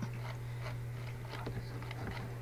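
Faint, scattered clicks of a computer keyboard and mouse over a steady low hum.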